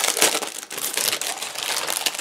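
Clear cellophane wrapping crinkling and crackling as it is peeled off a packaged craft kit by hand, a louder burst near the start, then steady rustling.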